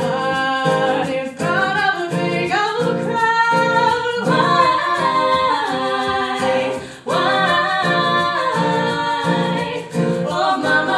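Live song: women's voices singing together over strummed acoustic guitar, with a brief break between phrases about seven seconds in.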